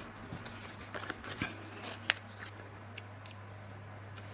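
Faint clicks and light taps of planner stickers and a sticker sheet being handled with tweezers on a paper page, a few scattered ticks with the sharpest about two seconds in, over a low steady hum.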